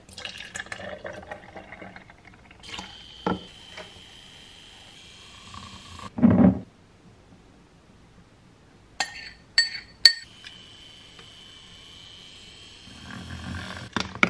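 Almond milk poured from a carton into a glass jar, with a steady high ring as the glass fills, then a heavy thud about halfway through. A few sharp glass clinks follow, then a second pour of a green liquid from a bowl into the same glass.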